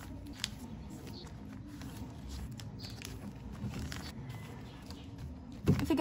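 Quiet handling of photocards and plastic binder sleeves: soft rustling as cards are slid out of the pockets, with a few light clicks.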